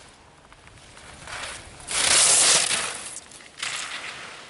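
Skis carving and scraping across hard snow as a giant slalom racer passes close by: a hiss that builds, peaks about two seconds in and fades, with a second short scrape near the end.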